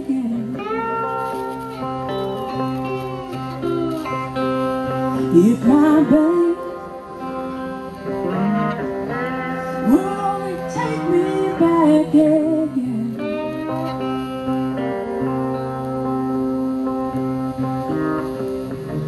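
A pair of Rusty Taylor-built cigar box guitars playing a blues duet, with notes that bend and glide in pitch over a steady low note.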